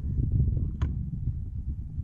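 Wind buffeting the microphone: a steady low rumble. About a second in there is one short, high, rising squeak.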